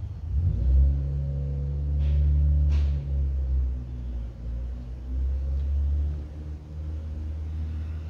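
A low, steady engine rumble, likely a motor vehicle running off-camera, that swells up about half a second in. Two short hissy sounds come at about two and three seconds in.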